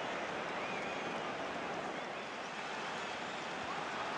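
Steady crowd noise of a football stadium crowd, an even din with faint scattered shouts or whistles.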